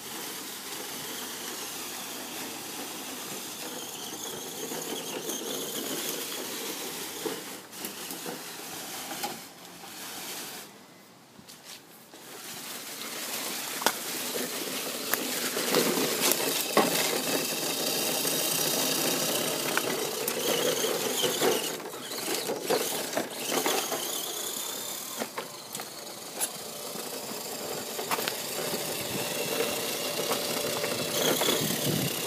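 Electric motor and gear whine of an Axial SCX10 scale RC crawler driving, with its tires rustling through fallen leaves. The sound dips briefly about a third of the way in, then runs louder for the rest.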